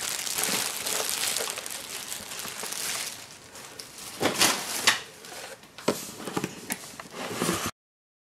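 Clear plastic wrapping crinkling as it is pulled off a boxed product, then several knocks and scrapes of a cardboard box being handled. The sound cuts off suddenly near the end.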